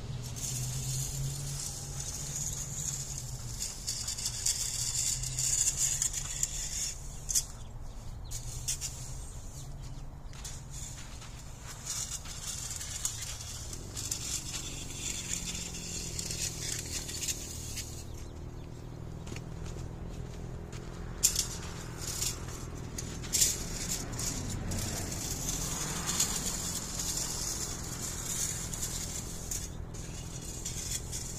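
A leaf rake scraping and spreading granular calcined clay mulch over a flower bed, a gritty, rustling scratch heard for the first several seconds and again over the last several seconds. A few sharp clicks come in the quieter middle stretch.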